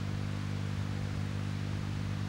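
Steady electrical hum from a microphone sound system, a stack of even low tones under a light hiss.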